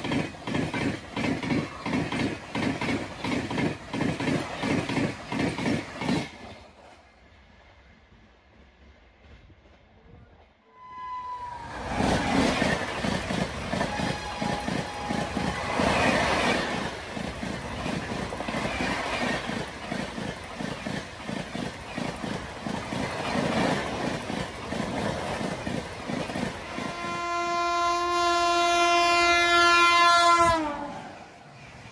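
Indian Railways express coaches passing close by at speed, their wheels clattering rhythmically over the rail joints. The clatter drops away for a few seconds, then comes back as another train passes. Near the end an electric locomotive sounds its horn: a loud, steady, multi-tone blast of about three seconds that dips in pitch as it cuts off.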